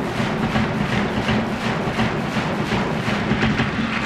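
Large bass drum struck with two mallets in a steady, fast beat, about four strokes a second, over the background noise of a ballpark crowd.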